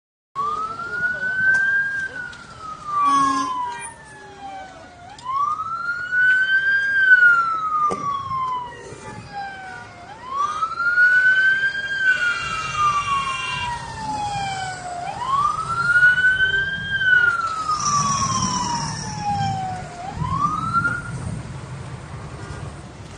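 Emergency vehicle siren sounding a slow wail: each cycle rises quickly, then falls slowly, repeating about every five seconds.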